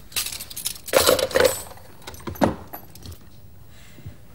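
Cutlery and china clinking and clattering at a dinner table, with a louder cluster of clatter about a second in.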